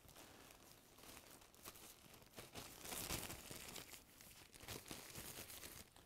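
Faint crinkling and rustling of a plastic bag as balls of yarn are pushed into it, loudest about three seconds in.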